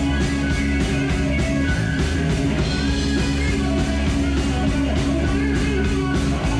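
Heavy metal power trio playing: distorted electric guitar, bass and drum kit in a fast, loud, steady rock groove.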